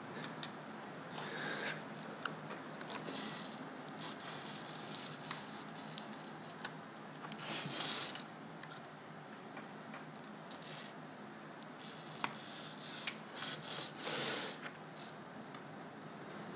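Snap-off utility knife scoring and scraping along a thin vacuum-formed plastic face shell: faint, uneven scratching strokes with a few sharp ticks and some louder scrapes. The blade is already getting dull.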